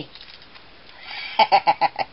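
A woman's short laugh, four or five quick "ha" pulses about one and a half seconds in.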